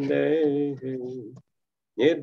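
A man chanting Sanskrit devotional prayers in a slow, sung tone: two drawn-out phrases on held notes, then a pause.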